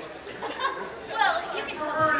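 Indistinct chatter of several voices in a large hall.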